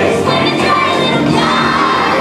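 A group of children singing a song together, loudly.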